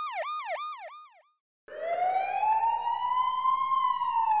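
Ambulance siren in a fast yelp, about four falling sweeps a second, fading out about a second in. After a short silence a police car siren starts a slow wail, rising for about two seconds and beginning to fall near the end.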